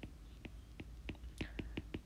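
Faint, light clicks, about eight over two seconds, from a stylus tapping and lifting on a tablet screen as a word is handwritten.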